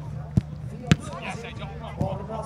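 A football kicked twice, two sharp thuds about half a second apart, the second louder, over voices talking in the background.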